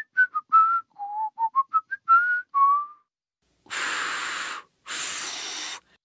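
Cartoon whistling of a short tune of about ten quick notes, falling and then rising. After a pause come two long breathy blows of air with no note in them: a failed attempt to whistle.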